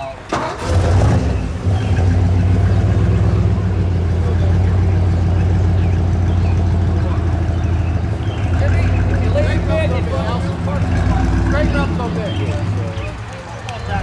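A car engine starting, catching within about a second, then idling steadily and loudly, easing off a little near the end.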